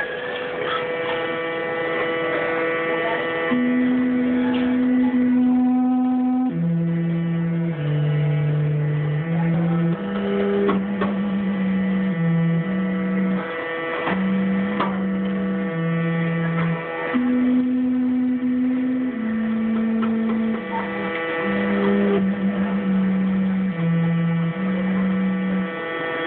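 Early-music ensemble of recorders, bassoon, harpsichord, shruti box and drums playing a medieval song: a low melody of held notes stepping up and down over one steady drone tone, with a higher line, a short trill and a few drum strikes.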